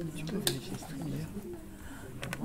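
Indistinct low voices of people talking in a room, picked up faintly, with a sharp click about halfway through.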